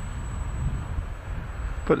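Wind buffeting the microphone, giving a low, uneven rumble, with no clear engine or motor tone.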